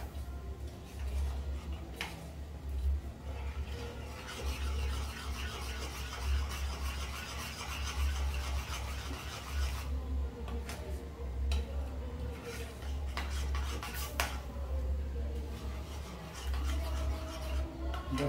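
Metal spoon stirring and scraping a thick chocolate filling around a saucepan, with sharp clicks of the spoon against the pan. The filling is being cooked down toward brigadeiro consistency. A steady low hum runs underneath.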